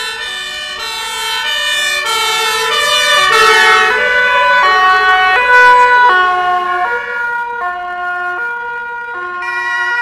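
Several German two-tone emergency vehicle sirens sounding at once, out of step with each other, from fire brigade vehicles and an ambulance driving past, over faint engine noise. Loudest about three to six seconds in as a vehicle passes close.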